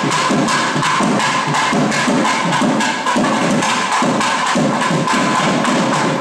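Thavil drumming: sharp stick and hand strokes in a quick, even rhythm, over a faint steady held tone.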